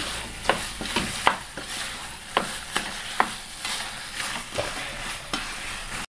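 Chicken pieces in thick masala frying with a steady sizzle in a nonstick wok while a wooden spatula stirs and turns them, making irregular scrapes and taps against the pan.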